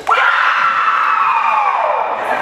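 A group of young women shouting together as a team breaks its huddle: one loud cheer that starts suddenly, is held for about a second and a half, and slides down in pitch as it fades.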